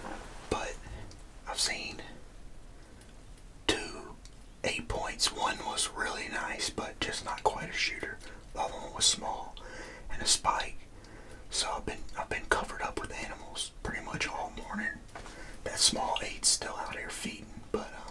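A man talking in a whisper.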